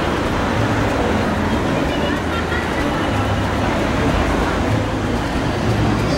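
City street ambience: traffic running past with indistinct chatter of passers-by.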